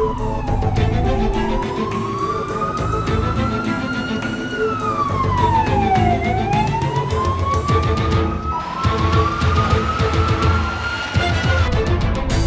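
Police car siren wailing: a slow rise in pitch followed by a quicker fall, repeating every few seconds, over dramatic background music.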